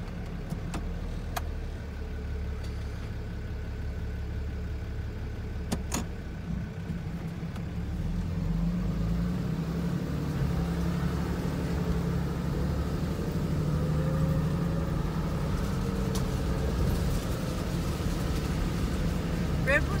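Engine and tyre noise of a vehicle driving slowly on a dirt forest track, heard from inside the cabin as a steady low hum that grows louder about eight seconds in. A few sharp knocks come early on.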